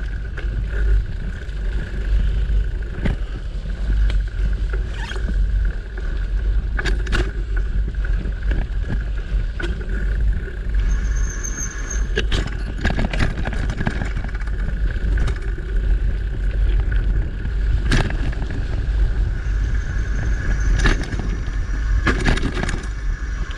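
Mountain bike rolling over a dirt and leaf-litter forest trail: a steady low rumble of motion on the bike-mounted microphone, with the tyres and frame giving sharp rattles and knocks over bumps many times along the way.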